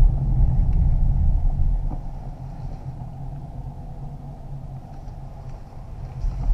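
Low rumble of a Kia Optima Plug-in Hybrid driving, heard inside the cabin. It is louder for the first two seconds and then eases off.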